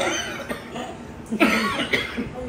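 A man coughing: a sudden loud cough about one and a half seconds in.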